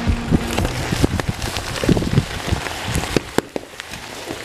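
Molten aluminum poured into a pan of corn syrup, the syrup sizzling and boiling up with many rapid crackling pops where the hot metal hits it. It eases off near the end.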